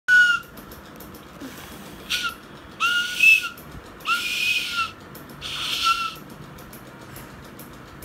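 A young child blowing a side-blown flute: about five short, breathy notes at nearly the same pitch, with a lot of breath hiss around them. They are uneven beginner's notes with gaps between them.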